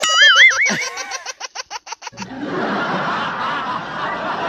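Comedy laughter sound effects: a high, warbling laugh breaks into a fast run of short staccato 'ha's that fades away. About two seconds in, a canned crowd laughter track takes over.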